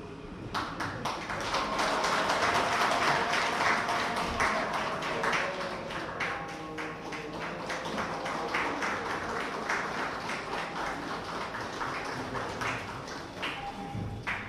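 Audience applause, many hands clapping, starting about half a second in, loudest over the next few seconds and thinning out toward the end.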